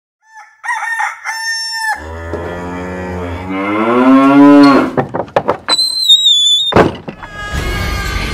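Farm-animal sound effects in a channel ident: short high clucking and crowing calls, then a long cow moo rising in pitch, the loudest part. A few clicks, a high whistled tone lasting about a second and a sharp crash follow, and music starts just before the end.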